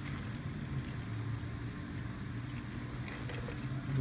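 Steady low background hum of a fast-food dining room, with a few faint clicks and rustles from eating at a table strewn with paper wrappers.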